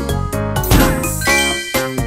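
Cartoon background music with a sparkling chime jingle, with a rising sweep about a third of the way in and bright high tinkling tones near the end.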